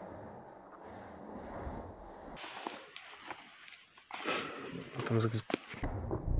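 Faint rustling with a few short snaps, like footsteps on the forest floor, then a brief voice about five seconds in.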